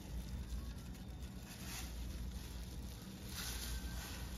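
Faint handling sounds of a fillet knife working through raw fish flesh along the bones, with plastic gloves rustling, over a steady low hum. The scraping brightens briefly twice, once in the middle and once near the end.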